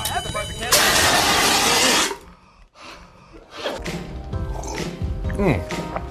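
Fire extinguisher discharging at a burning cake: a loud, steady hiss lasting about a second and a half that cuts off abruptly. After a short quiet gap, background music starts.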